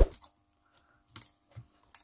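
Light clicks and taps of a hand handling an opened smartphone on a workbench: a sharp knock right at the start, then three faint clicks in the second half.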